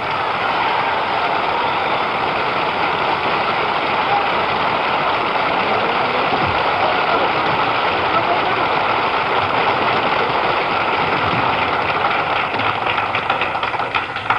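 Audience applauding, a steady, even sound that holds for the whole stretch, following a tap dance routine.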